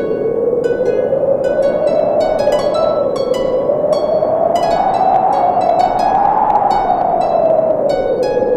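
Gentle harp music: a stream of plucked notes, each ringing briefly. Behind it is a steady whooshing sound that slowly rises in pitch, peaks near the end, and falls again.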